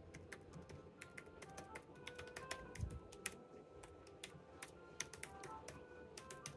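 Faint, irregular typing on a computer keyboard, several key clicks a second.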